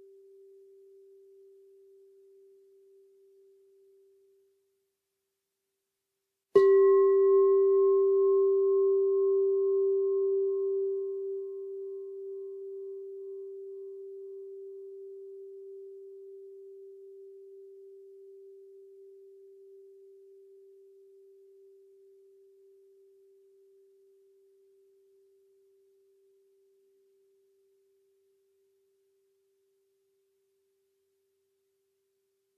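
Singing bowl struck once about six seconds in, then ringing with a steady low hum and fainter higher overtones that fade slowly over about twenty seconds. The last of an earlier strike's ring dies away in the first few seconds.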